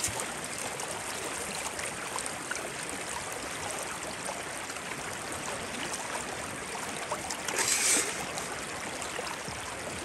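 Creek water running steadily through a metal sluice box, with one brief, louder splash about three-quarters of the way through.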